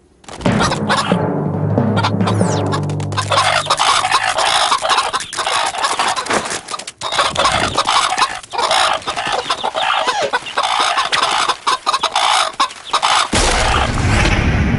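Dense, continuous clucking and squawking, like fowl, over music, with low held notes in the first few seconds and a deeper music line coming in near the end.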